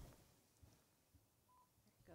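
Near silence: room tone, with one short, faint electronic beep about one and a half seconds in.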